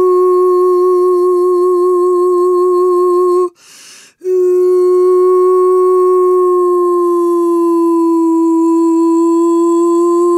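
A woman's voice holding one long, steady sung tone with vibrato. It breaks off briefly for a breath about three and a half seconds in, then resumes, dipping slightly in pitch and coming back up near the end.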